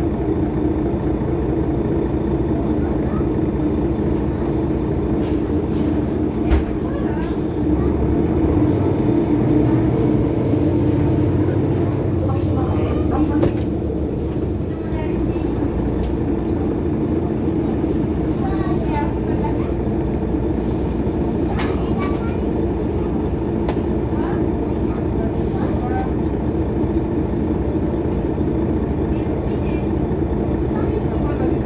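Mercedes-Benz Citaro Facelift city bus running with a steady engine drone. The engine note swells from about 8 seconds in and eases off around 14 to 15 seconds, as the bus pulls away and accelerates.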